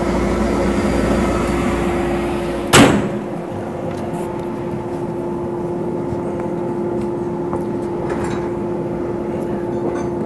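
Steel shot blast cabinet and its dust collector running with a steady hum. About three seconds in, one loud, sharp burst of noise, after which the low rumble drops away.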